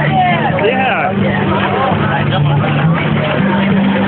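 Several people's voices chattering and calling out over a steady low drone that steps between two pitches.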